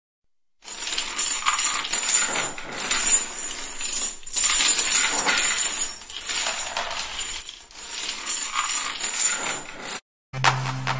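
Metal chains rattling and clinking, a dense metallic clatter that starts about half a second in and comes in several swells with brief dips.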